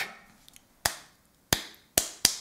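Hand claps: three single claps spaced slowly apart, each short and fading fast.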